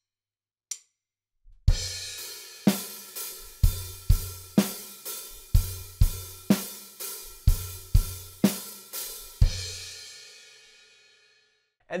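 Acoustic drum kit played slowly: kick drum hits struck together with cymbals, about a dozen strokes starting about a second and a half in. The last cymbal crash is left to ring out and fade away.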